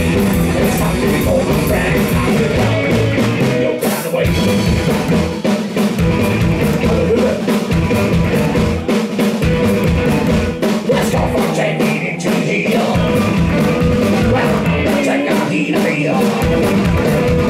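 Live psychobilly band playing loudly: upright double bass, drum kit and electric guitar driving a fast rock-and-roll beat.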